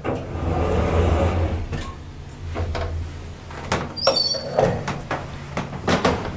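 Stainless-steel sliding doors of a 1971 traction elevator, with the lift's low rumble for about the first three seconds. Then come clicks and a short high squeak about four seconds in, the loudest moment.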